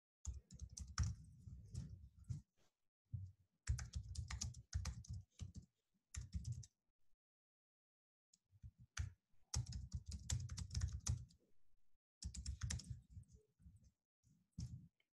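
Typing on a computer keyboard: quick runs of keystrokes, fairly faint, with a pause of a second or so about halfway through.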